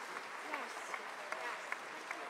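Audience applauding steadily, with scattered voices in the crowd mixed in.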